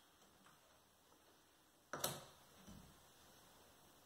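A single sharp snip about two seconds in, as hand scissors cut through a flower stem, followed by a soft low knock, in otherwise near-silent room tone.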